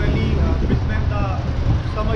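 City street traffic with a steady low rumble from passing cars, with people's voices talking over it.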